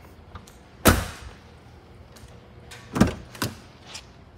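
A Lincoln Town Car's rear passenger door is shut with one solid thunk about a second in. About two seconds later come two shorter clacks as the front door's handle and latch are worked to open it.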